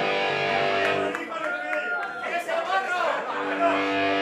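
Electric guitar through an amplifier, sustained notes ringing steadily, with voices talking over it.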